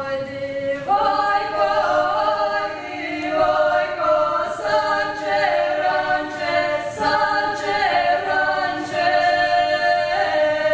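Women's vocal ensemble singing a folk song a cappella, several voices holding different sustained pitches at once. The sound fills out and gets louder about a second in as more voices join.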